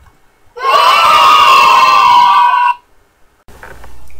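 A group of children cheering and shouting together for about two seconds, starting about half a second in.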